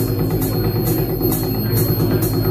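Live electronic music played on hardware electronics: a dense, heavy low drone with a short hissing hi-hat-like stroke about twice a second.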